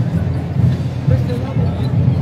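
Crowd chatter and voices over loud music with a heavy, pulsing bass.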